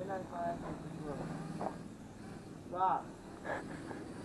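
Small Syma X11 toy quadcopter's motors and propellers buzzing steadily in the air, fading out a little under halfway through, with faint voices over it.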